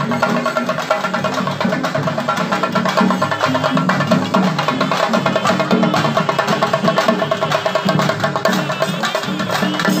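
Chenda drums beaten with sticks by a group of procession drummers, a fast, dense and steady rhythm of sharp strokes.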